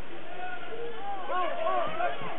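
Basketball sneakers squeaking on a hardwood gym floor: a cluster of short, arching squeals from about a second in, over the steady chatter of a gym crowd.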